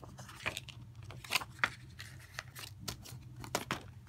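Plastic Blu-ray case being handled and closed: a scattering of light, irregular clicks and taps.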